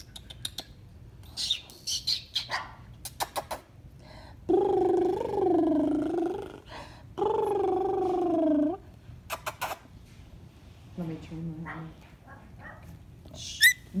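Three-week-old Shih Tzu puppies squeaking in short, high-pitched chirps. In the middle come two longer, wavering, drawn-out vocal sounds of about two seconds each, and a sharp high squeal falls in pitch near the end.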